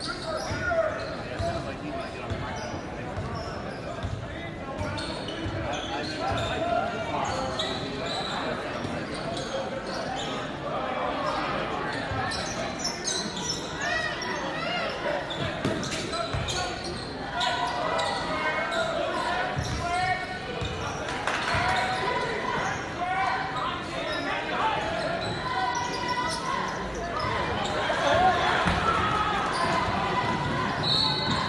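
Basketball game in a gym: a ball bouncing on the hardwood court and players' feet moving, with spectators talking and calling out throughout, echoing in the large hall.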